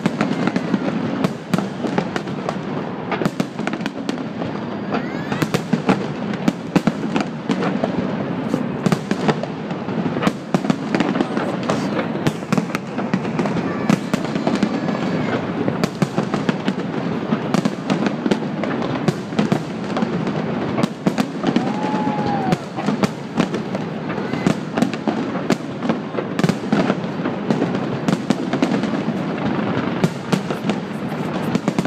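Large aerial fireworks display: a rapid, continuous barrage of shell bursts and crackle, with many sharp bangs in quick succession over a constant noisy din.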